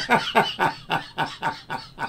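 A man laughing with his head thrown back: a run of 'ha' pulses, about four a second, growing fainter.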